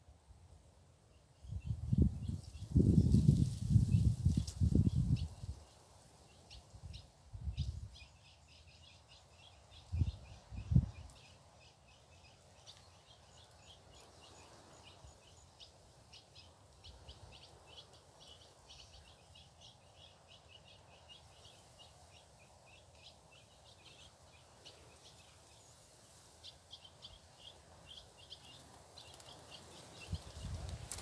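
Small birds calling with short, high chip notes repeated over and over. A few low rumbles come near the start and again about ten seconds in.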